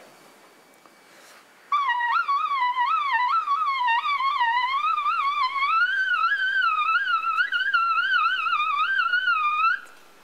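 A miniature, pocket-sized Yamaha trumpet played in a very high register: one continuous wavering line with vibrato and small turns, starting about two seconds in and climbing gradually in pitch before stopping just short of the end.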